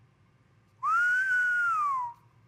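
A person whistling one note that starts about a second in. It slides up, holds, then slowly falls away over about a second, with a breathy hiss of air.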